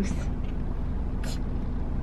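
Steady low hum of a car's engine idling, heard inside the cabin, with one brief soft hiss a little over a second in.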